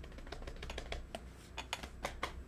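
Computer keyboard typing: a quick, irregular run of keystroke clicks.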